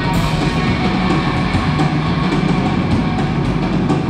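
Live rock band playing loud: electric guitar over a drum kit keeping a steady beat with cymbal hits.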